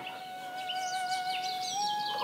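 Soft background music holding one sustained note that steps up slightly near the end, with short high bird chirps over it.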